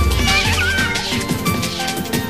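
1994 hardcore rave music from a DJ mix tape: a heavy bass and beat come in at the start, with a wavering, gliding high-pitched sound over it in the first second.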